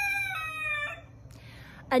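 A rooster crowing: one long call at a steady high pitch that ends about a second in.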